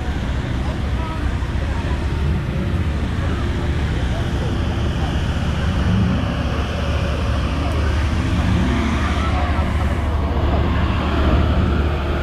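Car engine idling steadily with a low rumble, over the chatter of people standing nearby.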